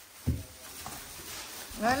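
A short, soft thump, then faint rustling of brown paper bags being handled and unpacked from a cardboard box.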